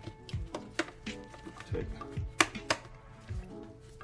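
Plastic clicks and knocks from the latch clips on a Fluval 407 canister filter's motor head as they are unclipped to take the head off. The loudest is a sharp snap a little past the middle, with a second one close behind it.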